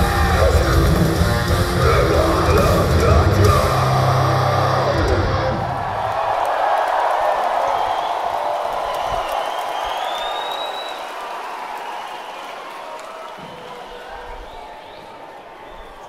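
A heavy metal band playing live, with distorted guitars and drums, stops about five seconds in. An arena crowd then cheers and whistles, and the cheering slowly dies away.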